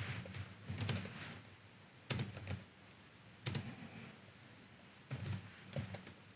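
Typing on a computer keyboard in four short bursts of keystrokes, separated by pauses of about a second.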